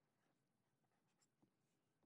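Near silence, with at most the faint sound of a pen writing on paper and two tiny ticks shortly after halfway.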